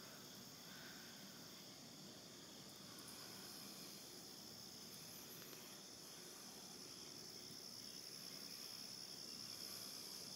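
Faint, steady chorus of insects outdoors: a thin, high-pitched continuous trill that holds level throughout.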